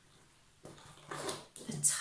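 Faint rubbing and stretching of a rubber balloon being pulled tight over the mouth of a tin can.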